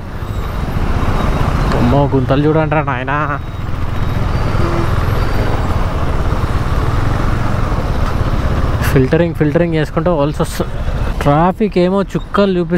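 Motorcycle engine running and road noise while riding slowly in traffic, a steady low rumble. A man's voice sings in two short stretches, about two seconds in and again near the end.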